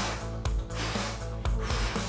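Background music with a steady beat and a sustained bass line.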